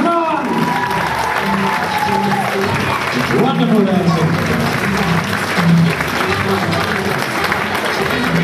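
Audience applauding, with voices in the crowd, over background music.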